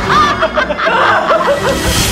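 A person snickering, a run of short rising laugh notes, over music.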